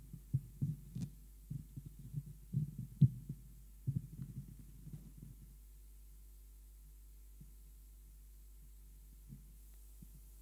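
Irregular low, muffled thumps and knocks for about the first five and a half seconds, the sharpest about one and three seconds in, then only a faint steady low hum.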